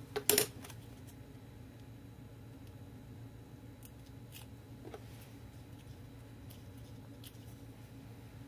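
Two sharp clicks of a small hard tool or object being handled on a craft table just after the start, then a few faint ticks and taps over a steady low hum.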